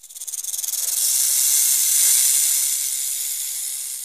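A hissing whoosh of noise, mostly high-pitched. It swells with a fast flutter over the first second, peaks about two seconds in, then slowly fades.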